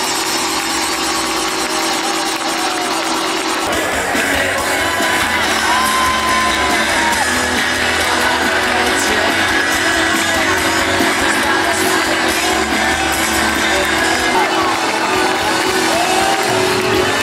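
Loud live band music heard from within the audience, with crowd cheering and whoops mixed in.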